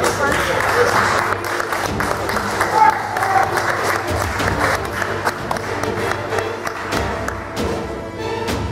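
Audience applauding over background music, the clapping densest in the first half and thinning out after a few seconds.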